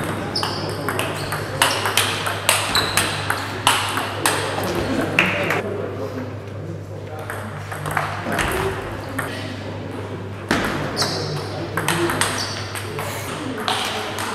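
Table tennis rallies: the celluloid ball clicking off rubber bats and ringing off the table in quick, irregular back-and-forth strokes, with a sparser pause between points in the middle before play picks up again.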